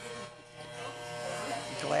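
Electric hair clippers running with a steady buzz while shaving a head down to stubble.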